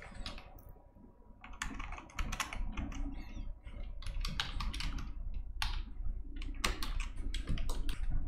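Computer keyboard typing: an irregular run of quick keystrokes that starts about a second and a half in and goes on to the end.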